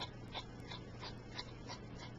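Light fingertip tapping close to the microphone: short, sharp clicks, about three a second, over a steady low hum and hiss.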